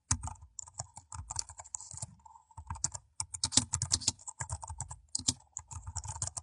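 Computer keyboard typing: a quick, irregular run of keystrokes, with a short pause a little after two seconds in.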